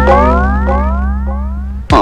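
Film background music: a held low bass note under a series of rising, boing-like pitch swoops, one about every half second, each fainter than the last. The music breaks off abruptly near the end.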